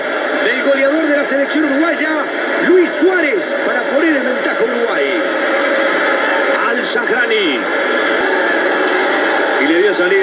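Football match broadcast commentary: a commentator talking over a steady background of stadium crowd noise.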